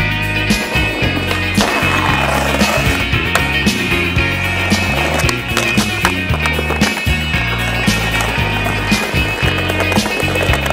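Skateboard wheels rolling on concrete, with sharp clacks of the board popping and landing, mixed with a song playing throughout.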